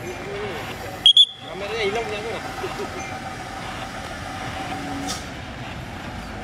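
Army truck engine running as the truck approaches along the road, a steady low rumble. About a second in come two short, loud, shrill blasts.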